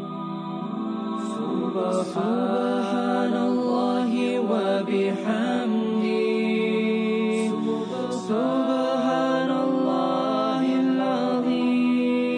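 Background nasheed: a voice chanting a wordless, ornamented melody over a held drone, pausing briefly about two-thirds of the way through and then resuming, with no beat or percussion.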